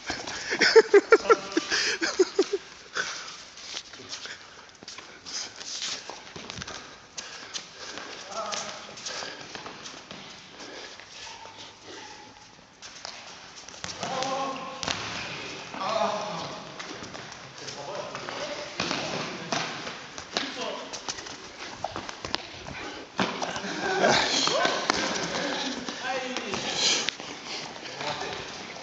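Indoor football on a hard sports-hall floor: running footsteps and the thuds of the ball being kicked, ringing in the hall. Players shout and call out at several points.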